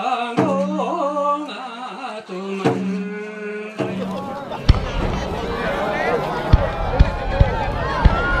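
Music, a wavering melody over a steady low drone, cuts off about four seconds in. Then come outdoor crowd chatter and fireworks going off, with several sharp cracks.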